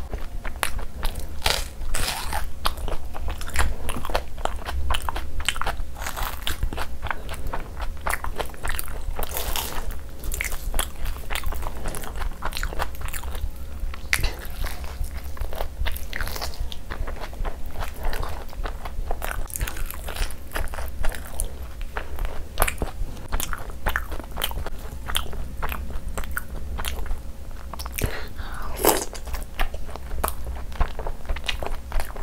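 Chewing and wet mouth sounds of a person eating soft luchi soaked in butter chicken gravy and chicken drumstick meat, with frequent irregular smacking clicks. A steady low hum runs underneath.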